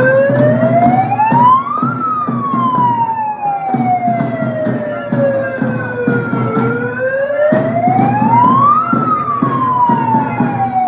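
A wailing siren, twice rising in pitch over about two seconds and then falling slowly over about four, with crowd noise beneath.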